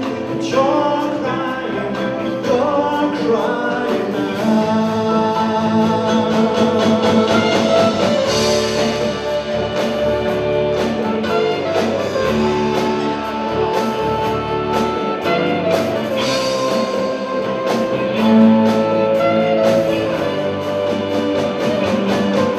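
A live band playing a song: a man sings into a handheld microphone over electric guitar, keyboard and drums with a steady beat.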